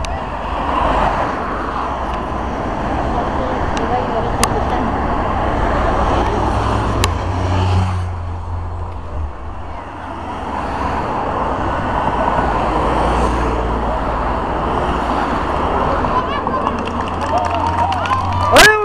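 Race convoy cars passing one after another along the road, under spectators' chatter and a steady low wind rumble on the microphone.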